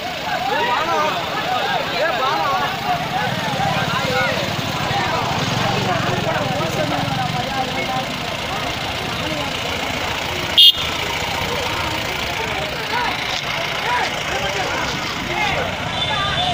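Many people talking and calling out at once over a truck engine running steadily, with a single sharp click about two-thirds of the way through.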